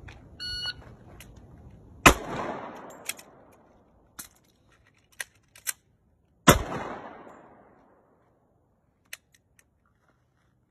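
A short electronic shot-timer beep, then two shots from an HK USP 45 Compact .45 ACP pistol about four seconds apart, each trailing off in echo. Several lighter clicks come between and after the shots.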